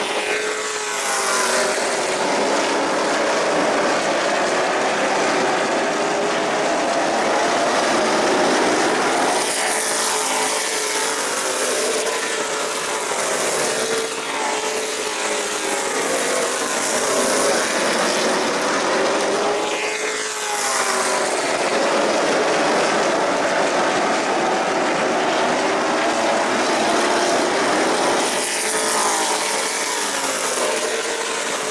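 Pack of Pro Late Model stock cars' V8 engines running at racing speed, a continuous drone from the field. Cars pass close several times, each pass falling in pitch as it goes by.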